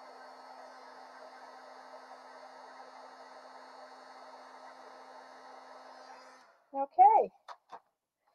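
Handheld heat embossing tool blowing hot air with a steady whir and low hum, melting embossing powder on a vellum card panel, then switched off about six seconds in.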